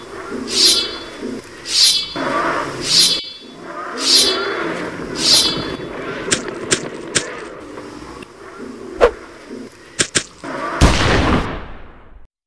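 Alien creature sound effects: snarling and shrieking, with about six sharp shrieks roughly a second apart over a low growl. Then a run of sharp hits, and near the end a loud blast.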